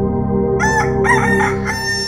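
A rooster crowing once: one cock-a-doodle-doo beginning about half a second in and lasting about a second and a half. It sits over a steady ambient music drone.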